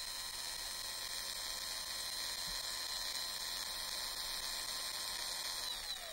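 Synthesized sound effect: a steady electronic hum with hiss over two held pitches, gliding down in pitch near the end as it winds down.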